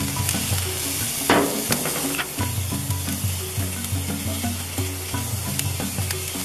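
Hamburger patties sizzling on a gas grill's grate, a steady hiss, with a few brief sharp taps, the loudest about a second in.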